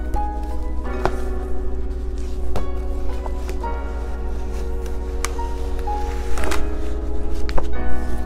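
Background music of held chords that change every few seconds, with a few short melody notes over them. A few sharp taps and knocks from a plastic choir folder and sheet music being handled are mixed in.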